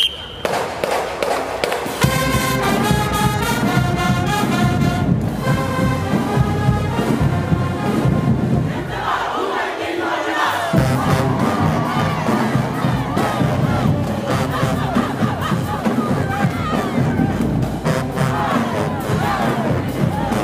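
Marching band members chanting and yelling together over a drum cadence, with a crowd cheering from the stands. It starts about two seconds in; the first part is rhythmic unison chanting, and from about nine seconds it breaks into many overlapping shouts.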